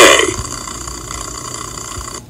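The end of a trailer's soundtrack cuts off, leaving a steady video-tape hiss with faint steady high whines.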